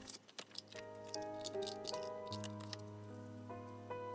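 Soft piano music, with light crinkles and taps of paper being handled and pressed onto a journal page. There is a cluster of them in the first second and a few more near the end.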